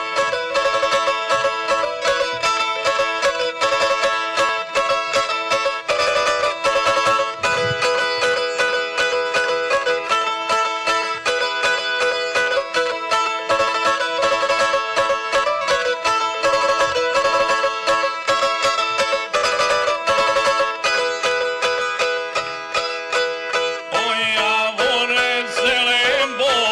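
A small long-necked folk tamburica played alone in fast, steady plucked notes over a held drone tone. Near the end, men's voices start to sing with a wavering, shaking tone.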